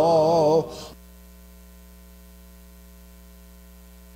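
Hymn singing ends on a held note under a second in, leaving a steady electrical hum.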